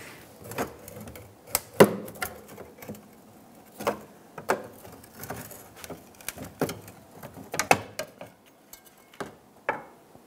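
Irregular clicks, taps and clinks of hand-tool work on a fuel tank strap: a pry bar working the plastic retainer buttons off the strap, and the strap being handled. The loudest knocks come about two seconds in and near eight seconds.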